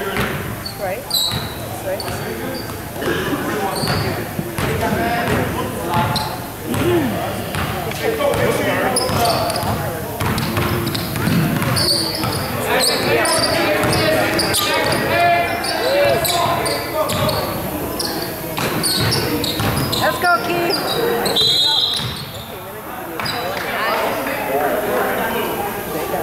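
A basketball being dribbled on a hardwood gym floor during a game, with repeated bounces. Indistinct voices echo through the large gym.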